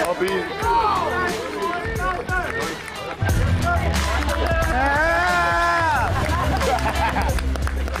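Young men shouting and cheering excitedly, with no clear words. About three seconds in, a produced music track with a heavy bass line and beat cuts in and carries on, including a long held note.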